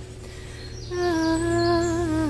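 A woman's wordless hummed singing: after a short pause, one long held note starts about a second in, steady and clear.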